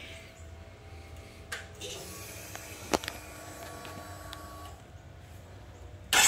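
Quiet handling sounds ahead of a motorcycle cold start: a few sharp clicks, the loudest about three seconds in, and a faint steady whine for a couple of seconds in the middle.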